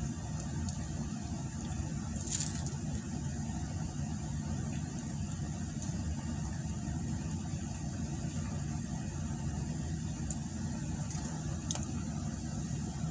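Steady low rumble of a car idling, heard inside the cabin, with one brief crackle about two seconds in.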